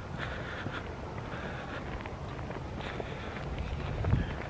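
Footsteps of a person walking, with a steady low wind rumble on the microphone of a handheld camera.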